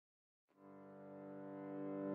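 Intro music: about half a second in, a sustained low chord fades in from silence and swells steadily louder, building up to the start of a beat.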